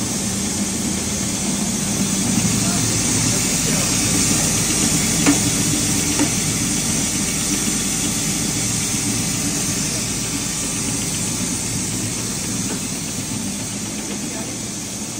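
Dalia (broken-wheat) machine running with its vibrating sieve (khatkhata chalna) rattling steadily, over a steady hiss of ground grain sifting through the mesh and pouring down the chute. Two sharp clicks come about five and six seconds in.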